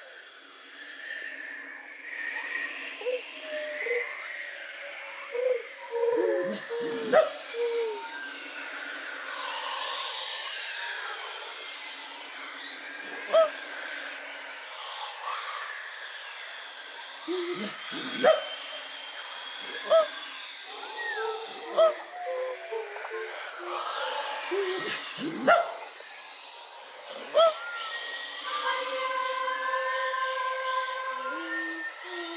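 Children's choir voices in a contemporary vocal piece: a breathy, hissing wash with short sliding vocal cries every few seconds. Near the end the voices settle into a held sung note.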